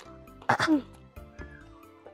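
A woman's short throat-clearing sound about half a second in, ending in a falling voiced note, over soft background music.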